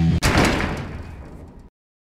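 The loud band music cuts off abruptly, followed by a single loud crash that rings out and fades over about a second and a half before cutting to silence.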